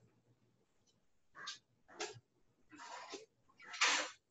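A few short, faint clatters and scrapes of cookware at the stove as a pot of cooked rice is handled, the last one the loudest.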